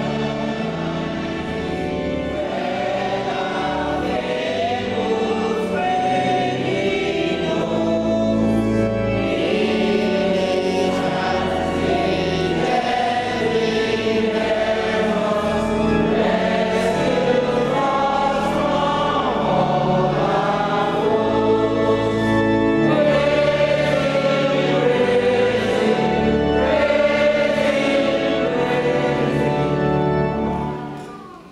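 Church congregation singing a hymn together, with organ accompaniment holding sustained low notes.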